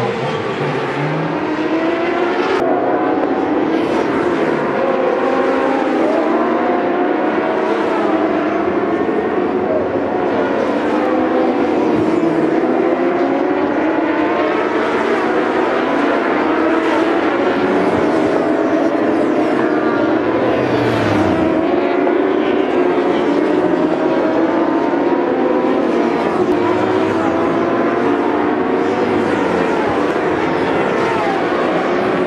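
Several racing superbike engines running at full race pace, overlapping, their pitch repeatedly rising and falling as the riders accelerate, shift gears and brake past the trackside microphones.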